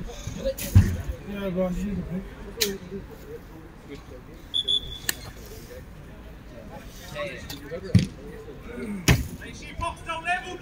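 A football being kicked and passed on an artificial pitch: a handful of sharp, separate thuds of boot on ball, the loudest two near the end, with faint shouts from players in between.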